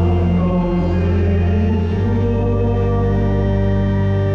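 Church choir singing a Vietnamese Catholic offertory hymn in long held notes over a steady, sustained organ bass.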